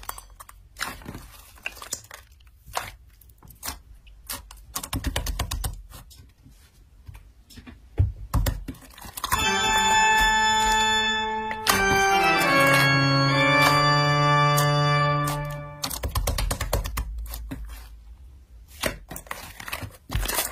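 Hands squeezing and pressing soft slime, making sticky clicks and small pops. About nine seconds in, a loud organ-like musical sting plays for about six seconds, its tones sliding downward. The slime squishing then resumes.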